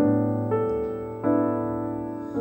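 Slow, piano-like keyboard music: sustained chords, with new ones sounding about half a second in and again a little past a second in, each fading slowly.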